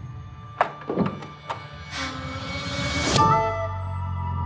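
Trailer sound design over the score: a sharp thud about half a second in and a few lighter knocks, then a rising whoosh that builds for about a second and cuts off suddenly, after which sustained musical tones and a low drone come back.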